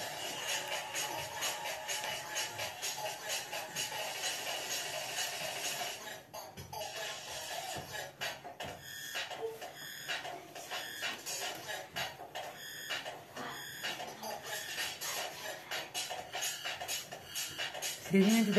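Dance music with a steady beat, playing for dancing.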